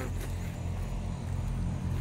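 A group of four-wheelers and side-by-side UTVs driving past: a steady low engine drone that grows slightly louder toward the end.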